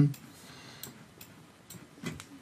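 A few light, sharp clicks at a computer, mouse buttons and keys, irregularly spaced, as the text in an on-screen name field is selected for retyping.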